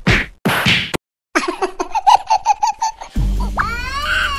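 Cartoon sound effects: two sharp whacks with the burst of an explosion, a brief pause, then a rapid high-pitched cartoon laugh of about six beats a second. Near the end a deep low hum comes in under rising whistling glides.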